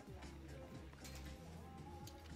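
Faint background music.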